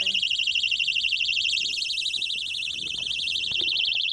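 A car's electronic alarm beeping rapidly and steadily at a high pitch inside the cabin, about eight beeps a second, briefly a little quieter in the middle; it sounds like an anti-theft alarm going off.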